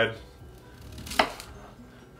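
Kitchen knife slicing down through a raw cauliflower head with a faint crunch, then striking the wooden cutting board once, a little past a second in.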